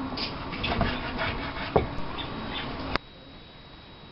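Knife cutting raw beef tripe on a wooden cutting board, with a sharp knock of the blade against the board a little under two seconds in. About three seconds in the sound cuts off abruptly to a low, steady background.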